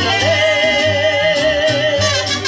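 Live Latin-style band music: a woman sings one long held note with vibrato over acoustic guitar, with a pulsing bass line underneath.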